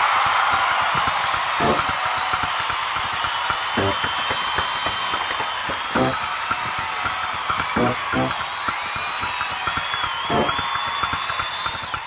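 A crowd clapping and cheering as a dense, continuous wash of applause, with a few short shouts and some wavering whistles in the second half.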